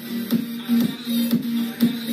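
Background electronic dance music with a steady beat, about two beats a second, over a sustained low note.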